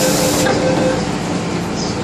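Inside an MTR M-Train car at a station stop: the hiss of the saloon doors closing cuts off about half a second in. A steady hum from the train's equipment continues.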